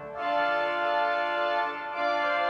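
Pipe organ playing sustained chords in several voices, moving to a new chord just after the start and again near the end.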